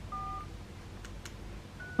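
A hotel room telephone's keypad beep: one short two-tone beep as a key is pressed to dial room service, followed by two faint clicks.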